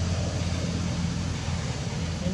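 Steady low hum and rumble under an even hiss, with no distinct events.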